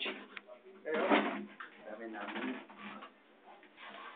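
Indistinct, muffled voices in a small room, with a louder burst about a second in.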